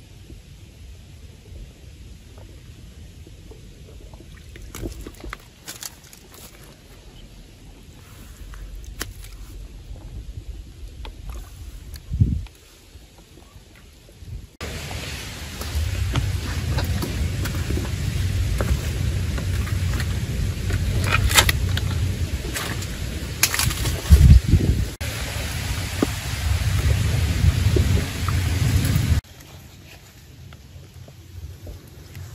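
Hands scooping and splashing in a shallow trickle of stream water, with small clicks and splashes. About halfway through, a louder steady rushing noise with a deep rumble takes over, with a few sharp knocks in it.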